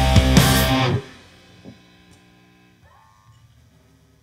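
Pop-punk band playing live with electric guitar, bass guitar and drums, all stopping abruptly together about a second in at the end of the song. A faint ring lingers after, with a few quiet tones near the end.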